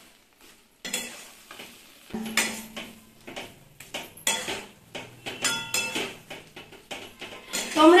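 Metal spatula scraping and knocking against a metal kadai while stirring thick potato curry, in irregular strokes about once a second from about a second in, some leaving a brief metallic ring.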